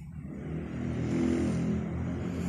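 A motor vehicle engine running, a low hum that swells about a second in and then eases off.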